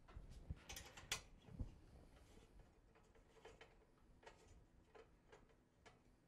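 Faint metallic clicks and ticks of a wrench working the fasteners on an aluminium extrusion frame. They are busiest and loudest in the first second or so, with a dull knock just after, then come sparser and fainter.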